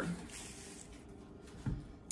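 Quiet kitchen room tone with one soft knock near the end, as kitchen things are handled on a wooden cutting board.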